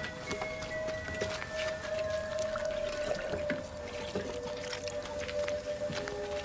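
Soft film-score music built on a long held note, over water being scooped and poured from a stone water jar with a ceramic pitcher, with small splashes and drips.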